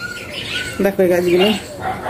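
Birds chirping in short, high whistled calls. A brief voice-like call comes about a second in.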